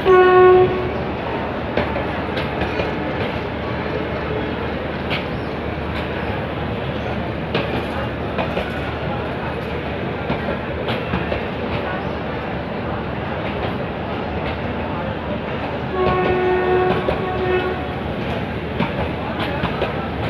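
Meter-gauge passenger coaches rolling along the rails with a steady rumble and scattered clicks of wheels over rail joints. The diesel locomotive's horn sounds twice: a short blast at the start and a longer one about sixteen seconds in.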